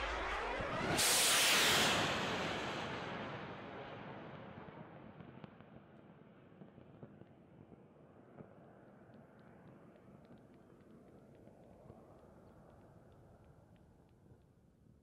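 Rocket motor firing at lift-off: a sudden loud rush of noise about a second in that fades away over the next several seconds as the rocket recedes, leaving a faint hiss with scattered small ticks.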